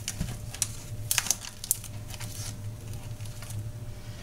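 Plastic film being pulled and torn off a supermarket meat tray: scattered crinkles and small ticks, over a low steady hum.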